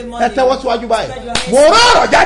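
A man's voice speaking animatedly, with a sharp hand slap about a second and a half in, followed by a loud shout that rises in pitch.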